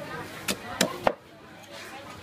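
Heavy knife chopping fish on a wooden chopping block: three sharp chops in quick succession about half a second to a second in.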